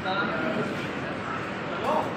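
People talking, with a short, high, rising whine from a young child near the end.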